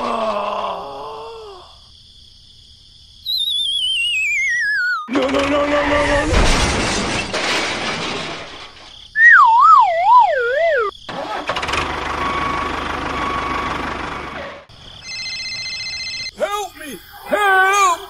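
A run of cartoon-style sound effects: a falling, warbling whistle, then a loud wobbling slide-whistle tone, a short steady electronic beep chord, and squeaky, wavering voice-like sounds near the end, with stretches of noisy hiss between them.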